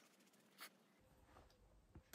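Near silence: quiet room tone, with one faint, brief soft sound a little over half a second in.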